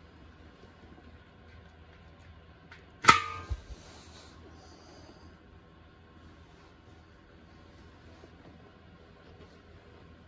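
A single sharp pop about three seconds in as a hot-glued pulling tab snaps free of the metal fuel tank under a paintless-dent-repair puller, the tank ringing briefly. Two softer knocks follow.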